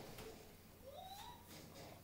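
Near silence: room tone, with one faint rising tone near the middle.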